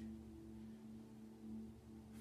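Quiet background music of sustained, drone-like tones, steady and without a beat.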